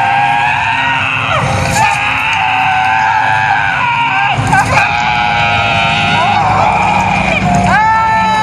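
A performer's high, drawn-out screams, several long cries each held for a second or more, the last one rising in pitch as it starts, over a low steady drone.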